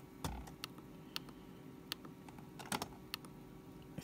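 Buttons on a FrSky Horus radio transmitter clicking as they are pressed, about eight or nine short sharp clicks at irregular intervals, two of them close together a little before three seconds in, while the menu steps to the next page.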